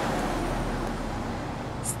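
A car driving past on a city street, a steady rush of engine and tyre noise with low rumble that fades a little in the second half.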